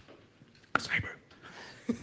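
A short breathy, whispered vocal sound close to a microphone about a second in, with a briefer one just before the end.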